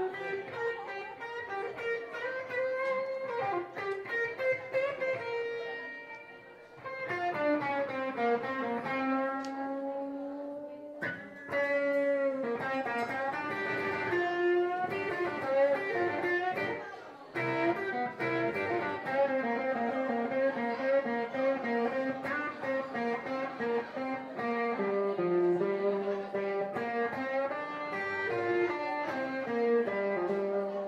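Live band playing an instrumental passage, an electric guitar carrying held melody notes over the band. The music dips briefly about six seconds in, then comes back fuller.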